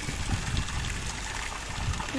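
Swimming-pool water splashing and sloshing, churned up by a swimmer's kicking feet.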